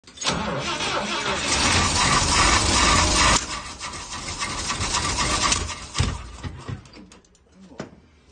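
1960 International Metro AM132 van's engine starting and running loud for about three seconds, then dropping off sharply and dying away over the next few seconds. It won't keep running because the carburetor is not putting out any fuel.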